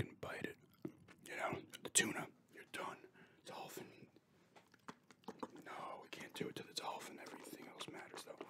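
Close-miked whispering, broken by many short sharp clicks of gum being chewed.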